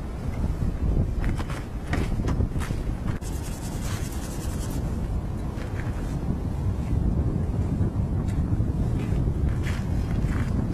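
A large RC model plane's gasoline engine running on the ground, its propeller blast buffeting the microphone so that it comes through mostly as steady, heavy wind noise.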